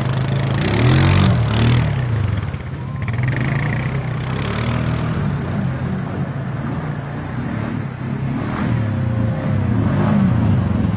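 ATV engine revving as the quad ploughs through deep floodwater, its pitch rising and falling several times, with water splashing and churning.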